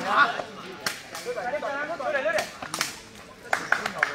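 Several sharp cracks of a sepak takraw ball being kicked in play, with shouting voices between them.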